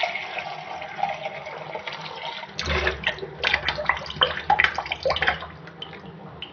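Tap water running into a stainless steel vessel as it is rinsed in a kitchen sink. From about halfway the flow gets louder and fuller, with a run of sharp metal clinks and knocks.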